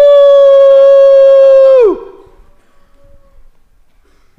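A man's long, high, steady "woo!" cheer held on one pitch, which drops and cuts off about two seconds in.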